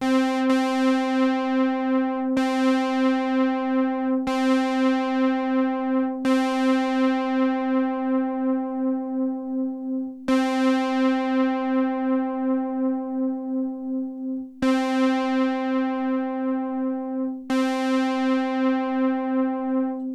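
Synthesizer playing one held note, struck afresh about seven times, through a June-60 chorus pedal on chorus setting one, with a steady wavering in loudness. The pedal's left internal trim pot is being turned at the same time, with no audible change to the chorus.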